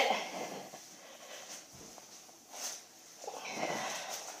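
Faint footsteps and shuffling on a carpeted floor as a person moves about a quiet room.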